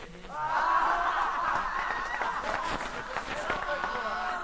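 A man's voice singing a fast embolada verse in a near-spoken style, with faint pandeiro strikes behind it; the voice comes in loudly a moment after the start.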